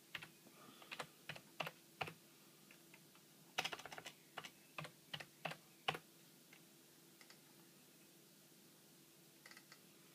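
Typing on a computer keyboard: a run of irregular keystrokes for about six seconds, then it stops, with a few faint clicks near the end.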